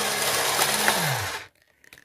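Haynes Internal Combustion Engine model running on its battery-powered electric motor: a steady mechanical whir of the motor turning the plastic crank, pistons and valves, which stops abruptly about one and a half seconds in.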